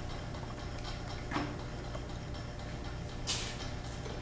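Hands handling a tensiometer and the handheld tensimeter probe: two short handling noises, a small knock about a second in and a brief brushing noise near the end, over a steady low hum.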